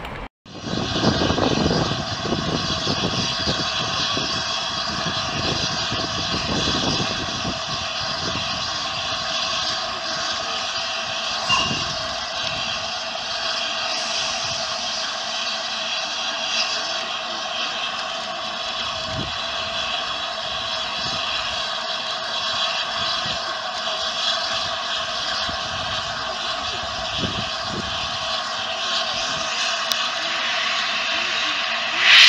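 Steam hissing steadily from the open cylinder drain cocks of LNER A3 Pacific 60103 Flying Scotsman, with a few low thuds in the first several seconds.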